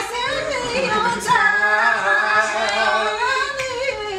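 Women singing unaccompanied, with a long held note through the middle.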